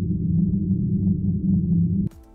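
Low, steady bass drone from a logo intro's music, with nothing in the upper range.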